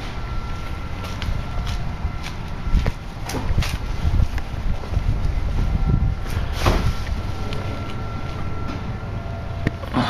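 Steady low rumble of outdoor background noise, surging a little in the middle, with a faint steady high-pitched tone and a few light clicks.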